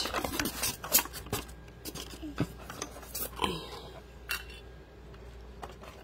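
Plastic toy telescope and tripod being handled and angled: a scatter of light plastic clicks, knocks and rubbing that thins out after about four seconds.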